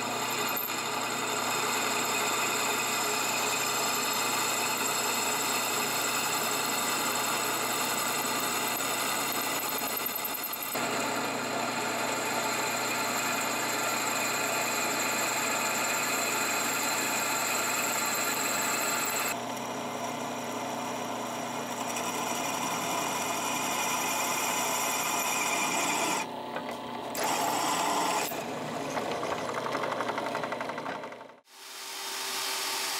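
Drill press running steadily as its bit bores holes through a forged steel knife blank. The sound shifts in character about a third of the way in and again past halfway, with a brief dip and rise near the end.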